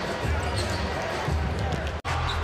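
A basketball being dribbled on a hardwood court, heard over the steady noise of an arena crowd.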